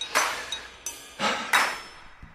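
A run of sharp, metallic-sounding hits, each ringing off briefly. The loudest come early and about a second and a half in, with smaller ones between.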